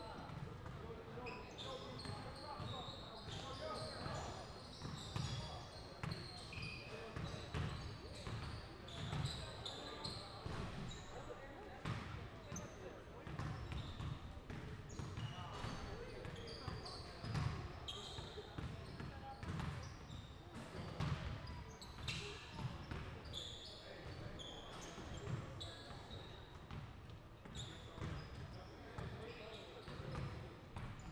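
Basketballs bouncing on a hardwood gym floor in a steady run of thuds, with voices chattering in the background.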